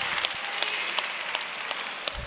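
Congregation applauding, many hands clapping in a large hall, slowly dying down.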